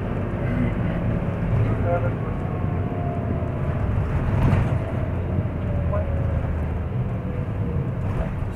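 Steady low rumble of a car driving through city traffic, heard from the moving car, with a faint tone sliding slowly lower through the middle of the stretch.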